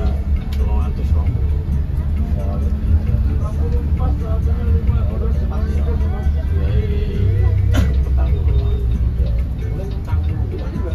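Intercity coach heard from inside the cabin: the engine's low, steady rumble as the bus pulls along, with one sharp knock about eight seconds in.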